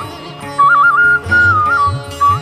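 Instrumental interlude of an Indian devotional song: a bansuri-style flute plays a high melody with quick trills and turns over a lower instrumental accompaniment. The flute line drops out for about half a second near the start and then comes back in.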